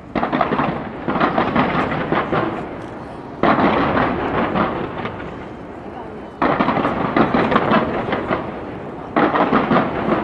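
Fireworks going off in volleys: five times, a sudden bang sets off a dense crackle that fades over two to three seconds before the next volley begins.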